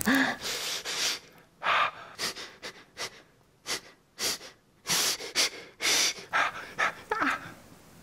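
A person gasping and breathing hard in pain after a finger is bitten: a run of about a dozen sharp, breathy inhales and exhales. A short voiced cry comes at the very start, and a falling whimper comes near the end.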